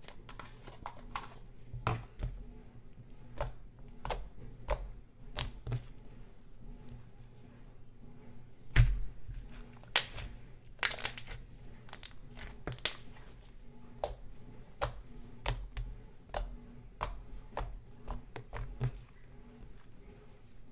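Slime squeezed and kneaded by hand, giving irregular sharp clicks and pops as trapped air bubbles in it burst, several a second and loudest in the middle.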